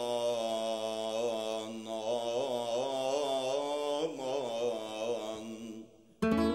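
A solo male voice sings a long, held chant line, ornamented with wavering melismatic turns in the middle, and fades away near the end.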